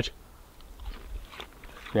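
Faint crunching and chewing of crispy deep-fried, chip-battered pike as it is eaten, a few small irregular crunches.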